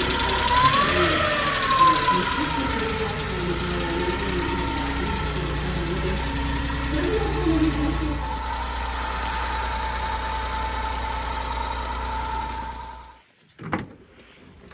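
Small engine of a Suzuki Carry kei truck idling steadily under a voice talking. The running sound cuts off about a second before the end, followed by a sharp click.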